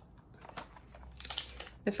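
A cardboard toy box being handled and passed from one hand to another: a scatter of light clicks and taps, with a word of speech starting at the very end.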